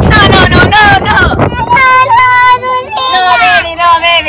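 A voice talking, then from a little before two seconds in a very high-pitched voice singing in drawn-out, wavering notes.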